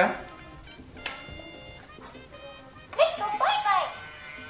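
Baby Alive Go Bye Bye talking doll switched on, giving faint electronic tones and then, about three seconds in, a short high baby-voice phrase through its small built-in speaker.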